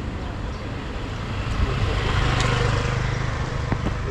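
A motor vehicle passing by: its engine hum and road noise build up, peak about halfway through, and fade again.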